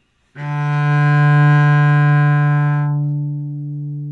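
Cello playing one long bowed note, the open D string (D3), held steady for almost four seconds. Its brighter overtones fade near the end as the note dies away.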